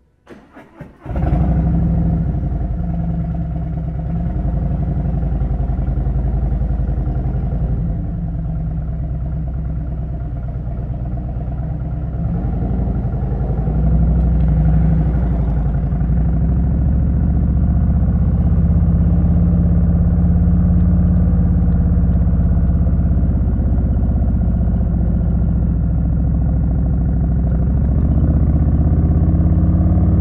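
2018 Harley-Davidson Road Glide Special's V-twin engine being started: brief starter cranking, then it catches about a second in. It runs steadily after that, and its pitch rises near the end as the bike accelerates.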